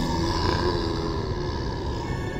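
Low growling monster sound effect over a deep rumble, with a wavering growl about half a second in.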